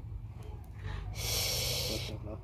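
A person blowing a breath onto smouldering kindling, heard as a steady breathy hiss that starts just over a second in and lasts under a second.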